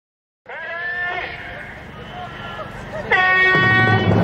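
A voice giving two long, high held calls: the first starts about half a second in and slides slightly, and a second, higher and steadier call comes near the end.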